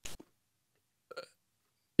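Near silence between talk, broken by a brief click right at the start and a short, faint vocal sound about a second in, a hiccup-like noise from a person at the microphone.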